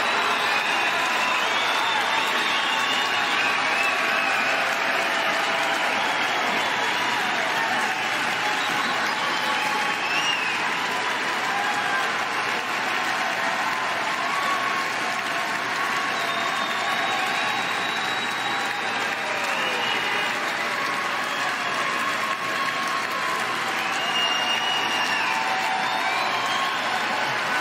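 Large theatre audience applauding steadily and without a break, with a few voices calling out over it.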